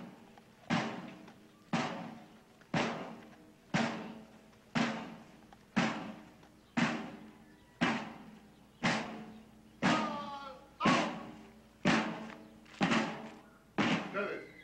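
Military marching drum beaten in slow, even single strokes, about one a second, each stroke ringing out and dying away before the next: a slow march cadence for a column of soldiers.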